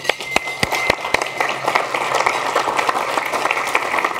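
An audience applauding: a few separate claps at first, quickly filling into steady applause.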